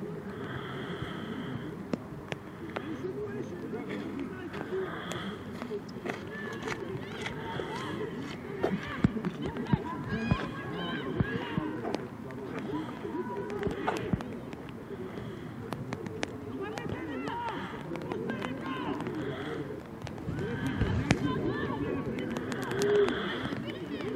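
Indistinct shouting and chatter from several young rugby players and people on the touchline, voices overlapping without clear words, with a few sharp knocks scattered through.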